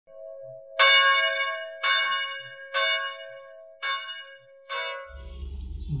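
A bell struck five times, about a second apart, each strike ringing out and fading, over a steady humming tone.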